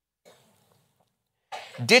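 A pause in a man's preaching. About one and a half seconds in he clears his throat briefly, and his speech resumes near the end.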